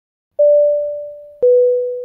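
Two-note descending electronic chime, a clean 'ding-dong': a pure tone starts about half a second in and a slightly lower one follows a second later, each fading away.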